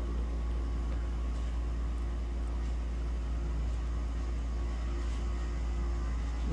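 A steady low rumble with a faint, even hum running under it.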